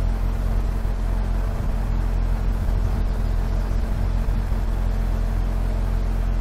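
Corvette LS2 V8 idling steadily, a low even hum heard from inside the cabin.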